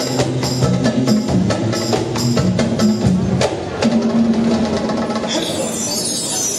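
A male nasyid vocal group sings in harmony over hand drums and sharp wood-block-like hits that keep a steady beat of about three a second. The percussion drops out about three and a half seconds in, leaving the held voices, and a shimmering high sound comes in near the end.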